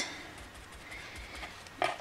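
Faint soft tapping and handling noise as a cut-and-dry foam dabber is picked up and worked with acrylic paint, under quiet room tone.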